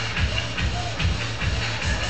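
Loud dance music played over a sonidero sound system, with a heavy bass beat about three times a second.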